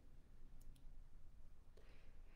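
Near silence: room tone with a couple of faint, brief clicks a little over half a second in.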